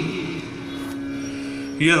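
A male voice chanting a verse in melodic recitation style trails off just after the start, leaving a steady drone note sounding alone; the chanting comes back in near the end.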